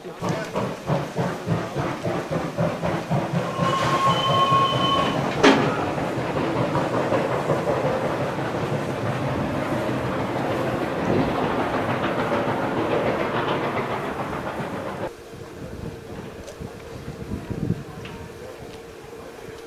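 Steam locomotive at work, with regular beats in the first few seconds and dense mechanical and steam noise after. A steady high tone sounds for about a second and a half about four seconds in. The sound drops off abruptly about fifteen seconds in.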